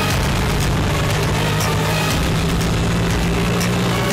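Auto-rickshaw engine running, a steady low drone.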